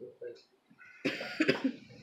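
A man says a short "yeah" with a laugh, then coughs about a second in: a rough burst of several coughs lasting just under a second.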